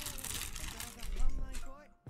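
Thin clear plastic packaging bag crinkling and rustling as it is handled and opened, with a louder stretch just past the middle, under a faint voice.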